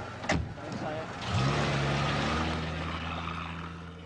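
A sharp knock like a car door shutting, then the taxi's engine starts: its pitch rises and settles into a steady run that slowly fades, as of the car pulling away.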